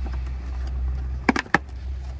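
Cardboard takeout box being opened by hand: two sharp cardboard snaps about a second and a half in as the lid comes free, over a steady low rumble.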